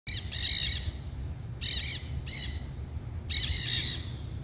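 Nanday parakeets (black-hooded parakeets) calling in four short bursts of rapid, high-pitched repeated notes, each burst under a second long.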